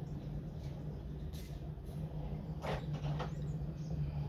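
Pencil lead scratching faintly on paper along a set square as a line is drawn, a few short strokes about one and a half and three seconds in, over a steady low hum.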